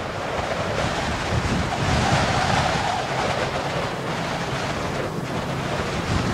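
Sea surf: a steady wash of churning, crashing waves that swells a little about two seconds in.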